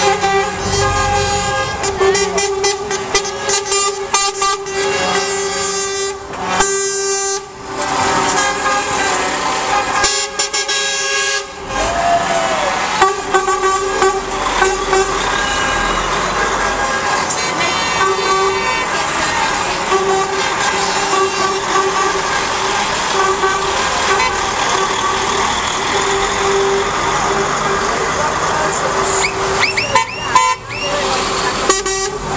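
Lorry air horns sounding again and again, in long held chords, as a line of truck tractor units drives past with engines running.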